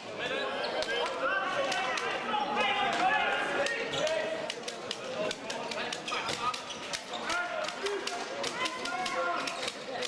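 A handball bouncing and thudding on a sports-hall floor in a run of short, sharp knocks, alongside several people's voices calling and talking.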